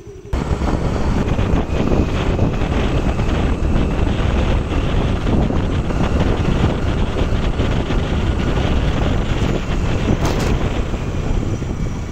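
Loud, steady wind rumble buffeting the microphone, starting abruptly just after the picture cuts in.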